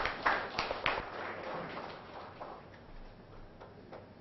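Scattered hand-clapping from a small audience, dying away over the first two seconds or so.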